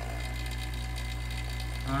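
Bench vacuum pump running steadily with a constant low drone. It is drawing on a valve-body circuit that only pulls five inches of vacuum, a leak past a counterfeit Sonnax HD 2-3 shift valve.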